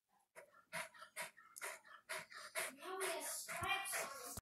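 Dog panting quickly, about two to three breaths a second, with a short voice-like pitched sound near the end.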